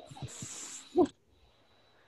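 A brief hiss lasting under a second, over faint murmuring, ending in a short spoken word.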